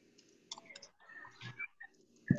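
Faint clicks with brief, faint voice-like sounds, low in level.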